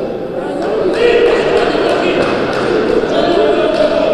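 Basketball dribbled on a hardwood gym floor, bouncing about three times a second in a reverberant sports hall, with voices around it.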